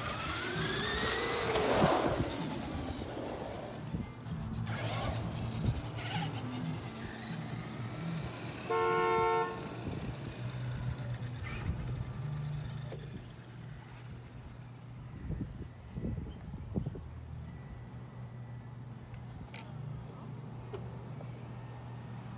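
Two Traxxas 2WD RC trucks, a Stampede and a Rustler, launching on brushed electric motors: a rising whine over the first two seconds as they accelerate, then fading as they drive off. A single horn honk of about a second sounds near nine seconds in.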